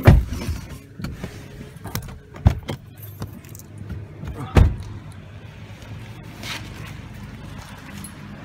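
Handling noise from a handheld phone being moved about: three heavy thumps, one right at the start, one about two and a half seconds in and one about four and a half seconds in, with lighter knocks between, over a steady low hum.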